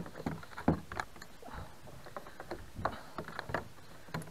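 Irregular light knocks, rattles and small splashes from handling a landing net held against a kayak's side, with a musky in the net.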